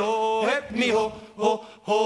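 A man's voice chanting a sung 'ho, ho' refrain: one held note for about the first half second, then short sung syllables with brief gaps between them.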